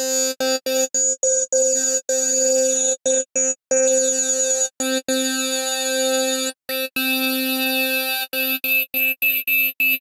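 Spectrasonics Omnisphere wavetable synth patch playing one repeated note through a 24 dB low-pass and a 24 dB band-pass filter run in parallel, the tone shifting as the mix between the two filters is moved. The note comes in short stabs at first and near the end, with longer held notes in the middle, and the tone turns brighter about two-thirds of the way in.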